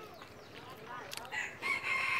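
A rooster crowing: one long held call that starts a little past halfway.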